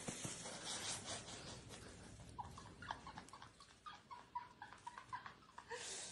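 Cats play-wrestling, giving a run of short, high squeaks that start a couple of seconds in and carry on for about three seconds, over faint scuffling.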